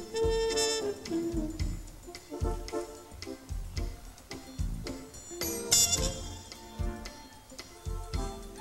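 Live band playing on stage: pitched melody notes over a steady pulse of low bass and drum hits, with a loud, bright crash nearly six seconds in.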